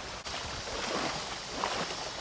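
Shallow river water running over rocks, a steady wash, with light sloshing from someone wading.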